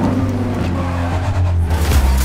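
Racing car engines running hard at speed as the cars pass close by. The pitched engine note sits over a steady low drone, and a music beat comes back in near the end.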